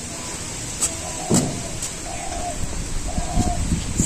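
Dry stalks and sticks being handled on the ground, knocking and crackling, with the loudest knock about a second and a half in.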